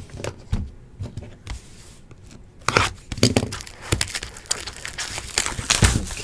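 Plastic shrink wrap being torn and crinkled off a sealed box of trading cards. A few light taps and knocks come first, then dense crackling from about three seconds in.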